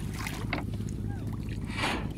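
Feet splashing in shallow river water as a small child wades, two swells of splashing about half a second in and near the end, over a steady low rumble.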